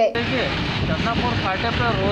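A narrator's voice cuts off at the very start, giving way to steady road traffic noise from vehicles, with people talking over it.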